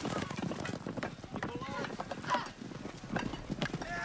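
Horses galloping, a rapid clatter of hoofbeats, with men shouting and yelling over it.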